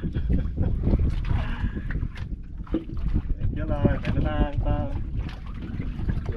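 Wind buffeting the microphone in an open boat at sea, a dense low rumble with scattered knocks, while a man's voice calls out briefly about four seconds in.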